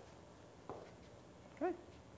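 Near silence: room tone, with one faint click about a third of the way in.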